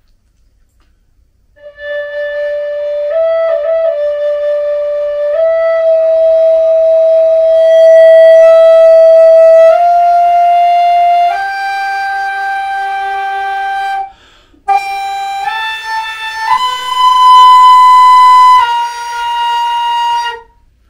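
Hybrid flute, a Native American-style flute mouthpiece on a Guo New Voice composite concert flute body, played in its second octave. Long held notes climb step by step from about D up to B flat, which takes harder, focused blowing. It starts about two seconds in and has a short break about two-thirds of the way through.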